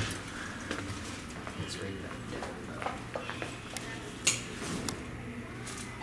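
A few scattered sharp clicks and taps, the loudest about four seconds in, over a low background murmur with faint voices.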